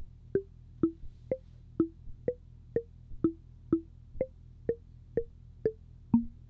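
Intellijel Plonk physical-modelling percussion module in a Eurorack synth, triggered about twice a second by Monome Teletype pulses. It plays short struck notes, each at a random pitch drawn from a table of Western scale notes within two octaves.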